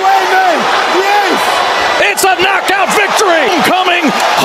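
Boxing arena crowd roaring and shouting at a knockdown, with loud, excited voices over it and a few sharp cracks about two seconds in.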